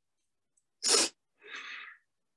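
A person sneezes once, a short loud burst, followed by a softer breathy sound like a sniff or exhale.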